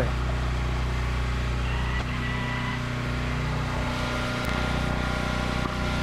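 Flatbed tow truck's engine idling steadily, a constant low hum with a few steady tones over it.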